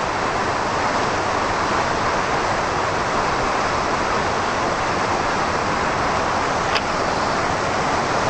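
A steady, loud rushing noise with no pitch and no rise or fall, and one faint click about seven seconds in.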